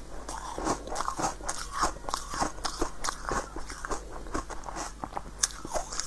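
Crisp crunching and chewing of a hard pink corn-cob-shaped snack, close to the microphone: a quick, irregular run of crackling crunches.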